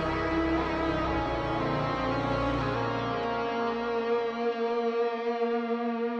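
Instrumental metal music from a guitar playthrough: effects-laden electric guitar holding a sustained chord that rings out steadily in the song's closing seconds. The low end drops away about four seconds in.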